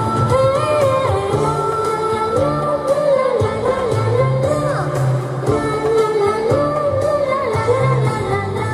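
A girl singing a song into a microphone over amplified instrumental accompaniment, her voice wavering in pitch on held notes above a steady bass line.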